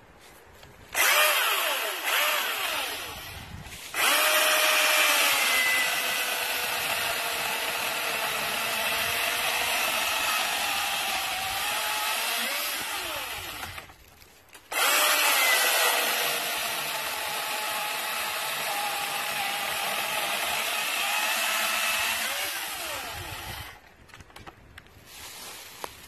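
Milwaukee M18 Fuel 16-inch brushless cordless chainsaw, blipped briefly twice about a second in, then run through a log in two long cuts of about ten seconds each with a short stop between them. The motor's whine sags a little in pitch as the chain bites into the wood.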